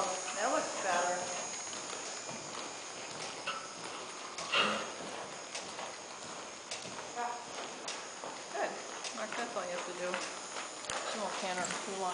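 A horse walking on the soft dirt footing of an indoor arena, its hoofbeats faint and scattered.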